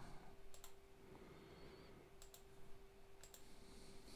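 Three faint computer mouse clicks about a second apart, each a quick double tick, over a low steady hum.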